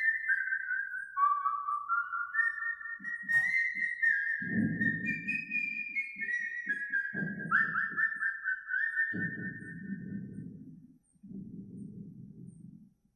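A person whistling a slow melody, one clear note at a time, stepping up and down in pitch, that stops about ten seconds in. Patches of low, muffled sound come and go beneath it.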